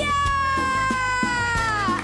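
A teenage girl holding one long high sung note in a cumbia, over band accompaniment; the note slides down near the end.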